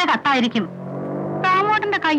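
Speech: a voice talking, with one drawn-out, level-pitched sound in the middle lasting most of a second.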